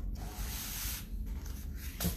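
A sheet of watercolour paper being slid and turned across a tabletop, a dry rubbing scrape in two strokes with a brief pause about a second in.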